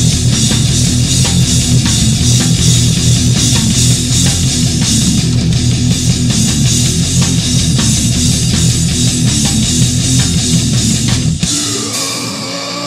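Hardcore band playing loud and steady: distorted electric guitars, bass guitar and drum kit driving a heavy riff. Near the end the bass and drums drop out, and a guitar line slides upward in pitch.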